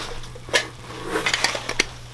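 Handling noise: a few light clicks and knocks with rustling close to the microphone, the loudest click about half a second in and a cluster near the end.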